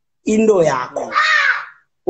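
A man's voice: a short utterance, then a drawn-out, higher-pitched sound about a second in, ending shortly before the next speech.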